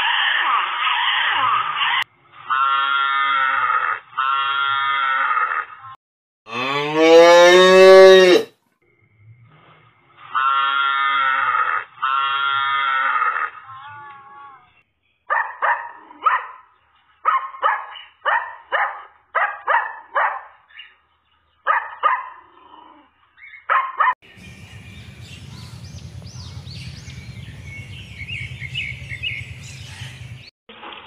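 Seals calling with long, cow-like bellows in pairs, one of them a big rising call about seven seconds in. Then a puppy gives a run of short yelps. From about 24 seconds there is a steady hiss with faint high chirps.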